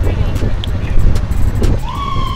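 Wind buffeting the microphone of a camera on a moving bicycle, a steady low rumble. Near the end a police siren starts up, one long tone sliding slowly down in pitch.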